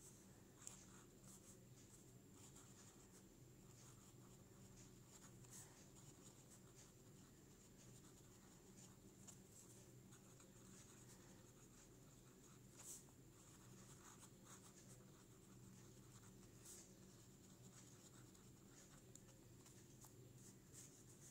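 Faint scratching of a pen writing on lined notebook paper, in short irregular strokes with a few sharper ticks, over a steady low hum.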